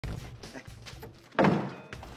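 A door swung shut, landing with a loud thunk about one and a half seconds in, followed shortly by a brief click.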